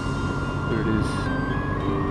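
Background music, a melody of held notes, laid over the low, steady rumble of the BMW R1200GS motorcycle riding along.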